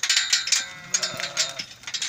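A sheep bleats once, about a second in, over repeated metallic clanks and clinks as the crowded flock jostles against a tubular metal gate.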